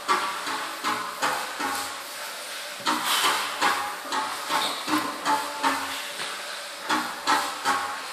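A lifter breathing hard while bracing over a loaded deadlift bar: a string of short, sharp breaths, two or three a second, with a brief pause about two seconds in.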